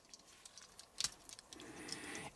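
Faint small clicks and ticks of the plastic parts and joints of a Rising Force Dead End transforming figure being worked by hand, with one sharper click about a second in.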